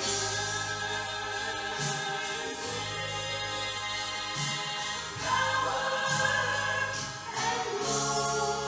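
A woman singing a slow gospel hymn solo into a microphone with instrumental accompaniment, in long held notes that grow louder for a phrase about five seconds in.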